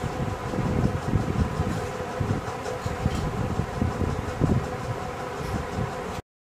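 Steady background hum with an uneven low rumble.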